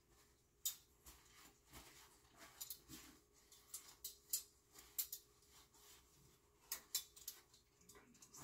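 Faint, irregular clicks and light rustling: metal kitchen tongs being handled and wiped with a paper towel.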